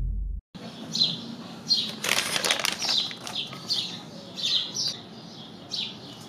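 Small birds chirping, short falling chirps repeating about every half second, with a brief rustling burst about two seconds in.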